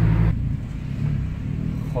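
Car engine hum heard inside the cabin, with road and wind hiss that drops away sharply about a third of a second in, leaving the low engine drone.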